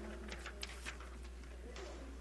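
Quiet meeting-room tone with a steady low electrical hum. A brief soft laugh comes at the very start, and a few faint clicks and rustles follow.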